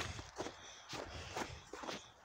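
Footsteps walking through snow, about three steps roughly half a second apart.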